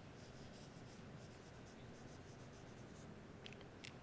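Dry-erase marker writing on a whiteboard: a run of short, faint squeaky strokes, with a couple of sharper clicks near the end.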